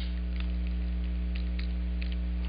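Steady electrical mains hum, one low tone with a stack of even overtones, with a few faint clicks over it.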